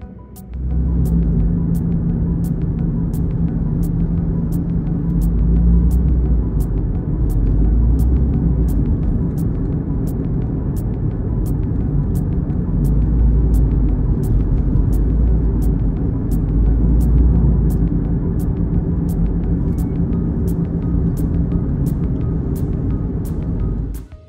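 Loud, steady low rumble of a car's road and engine noise heard inside the cabin. It cuts in suddenly and stops abruptly, swelling slightly at times. A faint, even music beat of about two ticks a second carries on underneath.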